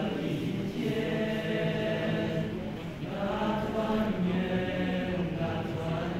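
Male youth choir singing a Chinese New Year song in several parts. A low note is held steadily under moving upper voices, with a brief breath-like dip about three seconds in.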